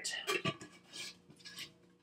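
Powdered sugar shaken out of a plastic container into a mixing bowl: a few short, soft rustling scrapes, mostly in the first half second, with a couple of fainter ones later.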